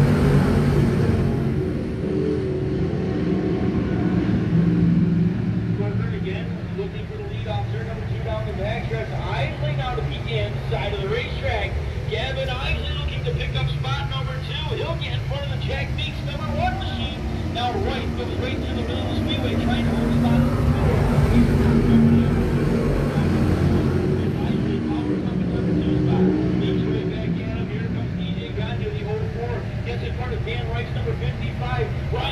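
A field of dirt-track race cars running at speed after a restart to green. The engines drone steadily and swell as the pack passes, loudest about twenty seconds in, with spectators' voices over them.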